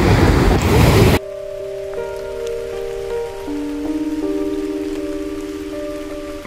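Water splashing and churning around a swimmer for about the first second. It cuts off suddenly, replaced by slow music of long held chords.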